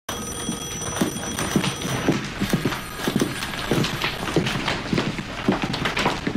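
Footsteps of two people, including high heels, walking on a hard office floor: an irregular run of short knocks, about two to three a second.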